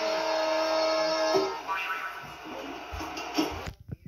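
Stage-show soundtrack playing from a television and picked up in the room: music with a long held note for the first second and a half, then a busier mix. It cuts out briefly just before the end.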